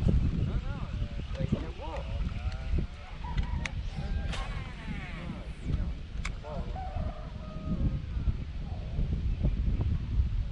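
Wind buffeting the microphone with a steady low rumble, over which a bird gives a series of calls that sweep up and down in pitch. Two sharp clicks sound, a few seconds apart.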